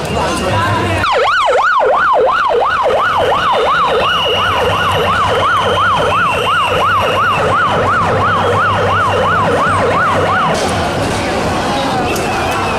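Emergency vehicle siren in a fast yelp, its pitch rising and falling about two and a half times a second; it starts about a second in and cuts off near the end, over crowd noise.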